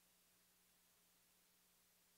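Near silence: faint steady hiss with a faint low hum.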